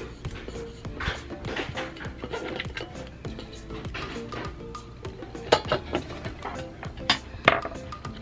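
Background music, with a few sharp metallic clicks and knocks as the bottom cover plate of a Singer Featherweight 221 sewing machine is pried off, the loudest three in the second half.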